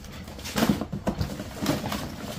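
Gloved hands rummaging in a cardboard box of small objects: several short knocks and rustles as items shift against each other and the cardboard.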